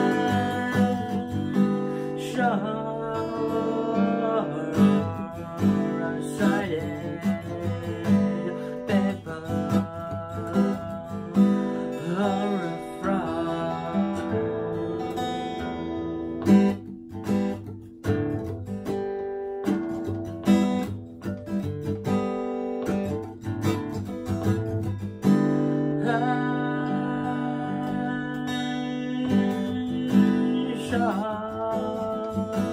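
Acoustic guitar strummed steadily with a man singing over it, mostly in the first half; the guitar carries on alone through the middle stretch.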